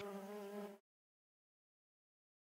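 Italian honeybee's wings buzzing in flight, a steady hum that cuts off suddenly within the first second.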